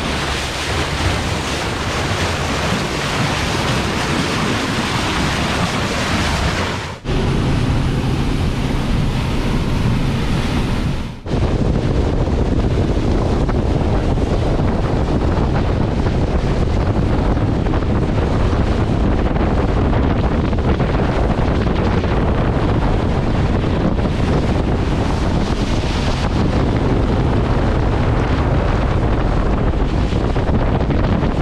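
Water rushing and splashing off the bow of a Jeanneau Merry Fisher 895 motorboat underway at sea, with heavy wind buffeting the microphone. The sound breaks off briefly at cuts about 7 and 11 seconds in.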